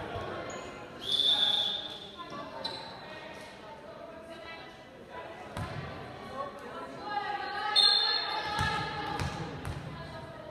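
Volleyball being hit and bouncing on a gym floor, with echoing crowd and player voices, and a short high whistle blast about a second in.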